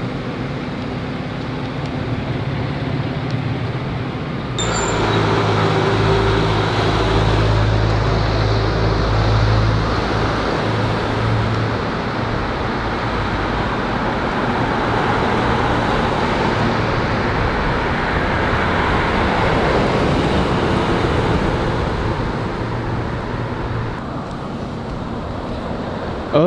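Outdoor street ambience with road traffic noise. It changes abruptly about four and a half seconds in, and a vehicle's low rumble follows for the next several seconds.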